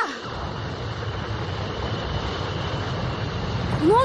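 A steady low rumbling sound effect in an animated cartoon, even and unbroken.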